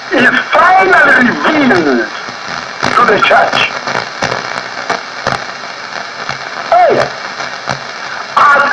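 A voice speaking in short phrases with pauses between, heard over a radio broadcast with a steady hiss underneath.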